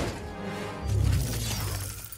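Film soundtrack: orchestral score mixed with crashing, shattering debris sound effects, with a heavy low hit about a second in.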